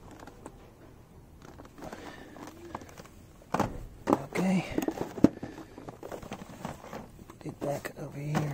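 Plastic blister packs of model buses being handled on a shelf: quiet at first, then several sharp plastic clicks and knocks from about three and a half seconds in, with one loudest click near the middle, and a brief murmur of voice among them.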